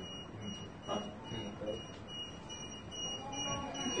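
Electronic alarm beeping, a high tone repeating about twice a second, with muffled voices underneath.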